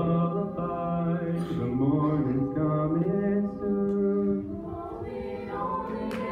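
Mixed-voice high school choir singing a cappella, holding sustained chords that shift in pitch every second or so.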